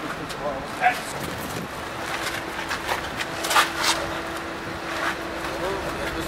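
Several people shuffling on cobblestones and heaving a large carved wooden head over onto its side: scrapes and irregular knocks of wood and feet, with short bits of voice. A steady low hum comes in about a second and a half in.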